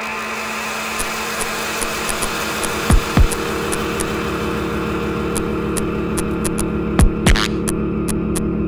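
Ambient electronica: a steady buzzing drone with layered held tones and scattered sharp clicks. A pair of deep falling thumps comes about three seconds in, and again about seven seconds in.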